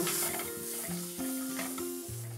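Butter sizzling as it melts in a hot frying pan, a faint steady hiss under background music of held notes.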